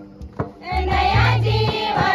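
A group of women singing a badhai geet, a wedding congratulation song, together to an instrumental accompaniment with low bass notes. A short lull with a couple of sharp strikes at the start, then the voices come back in under a second in.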